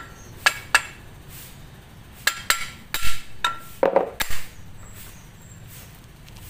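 Sharp metal clinks and knocks as machined steel bearing housing halves and a cylindrical tool are handled and set down on a board: two quick clicks, then a run of clinks with a short metallic ring, and a couple of heavier knocks about four seconds in.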